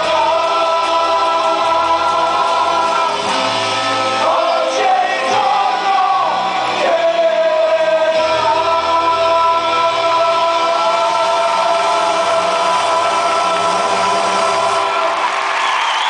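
Several singers of a stage musical singing together in full voice over the show's band, holding long notes, recorded live in a large hall.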